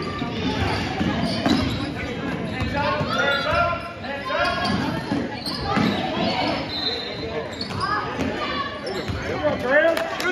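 Basketball game in a gym: a ball dribbling on the hardwood court and sneakers squeaking, with players and onlookers calling out. The sound echoes through the large hall. A short high squeak comes about seven seconds in.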